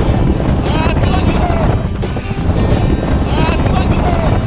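Wind buffeting the microphone and water rushing as an inflatable tube is towed fast across the water, with the riders yelling a couple of times.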